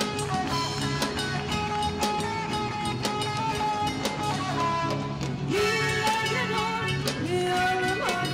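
A live band playing folk dance music: guitars over a steady drum beat, with a louder melody line with wavering pitch coming in a little past halfway.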